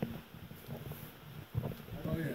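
Quiet background noise with a few soft knocks, one about halfway through and one a little before the end.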